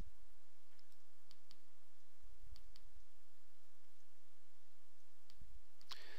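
Computer mouse clicks, several of them faint and mostly in quick pairs, over a steady background hiss, with a couple of low thuds.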